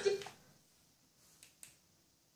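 TV dialogue cut off in the first moment, then quiet with two faint, short clicks close together about a second and a half in.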